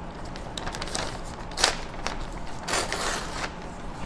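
Sheets of paper rustling as they are handled and sorted, with a sharp crinkle about a second and a half in and a longer rustle near three seconds.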